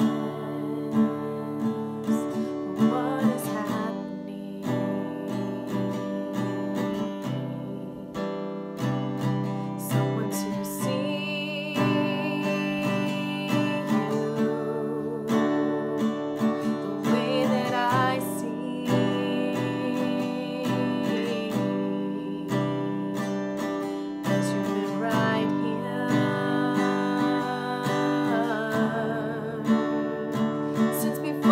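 Acoustic guitar strummed steadily, with a woman singing over it.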